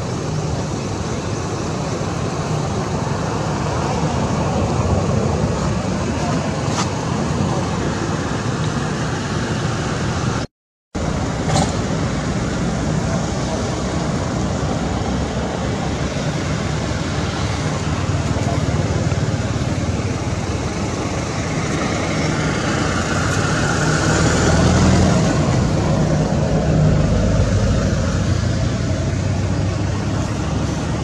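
Steady outdoor background noise, like road traffic, with a brief dropout to silence about ten seconds in.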